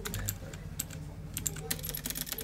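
Typing on a computer keyboard: an irregular run of separate key clicks.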